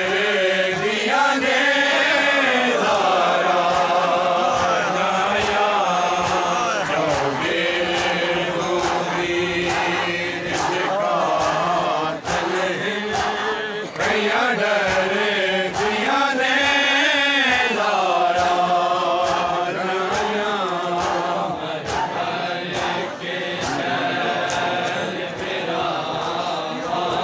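A group of men chanting a noha, an Urdu-Punjabi mourning lament, unaccompanied by instruments, the voices rising and falling together in long sung phrases. Through the singing runs a continuous beat of sharp slaps, typical of matam chest-beating.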